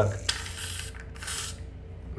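Vivatia Brightening 10 foam dispenser spritzing foam into its cap: two short hissing bursts, the second one shorter.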